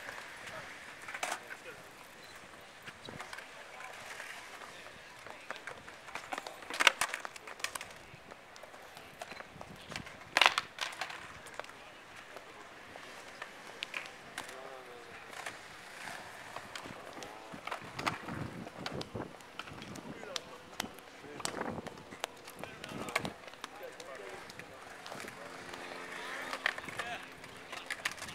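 Skateboard wheels rolling on concrete, with a few sharp clacks of the board hitting the ground, the loudest about seven and ten seconds in.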